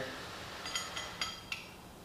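Several light metallic clinks of small steel bolts knocking together in the hand, a quick cluster about a second in.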